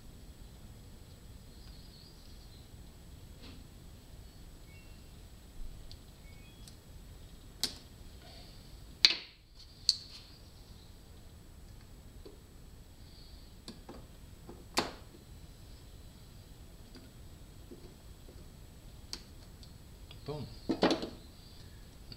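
Small metal clicks and taps as a piston compression ring is spread with pliers and worked onto an aluminium piston: a few single sharp clicks spaced seconds apart, then a quick cluster of clicks and clatter near the end as the piston is handled.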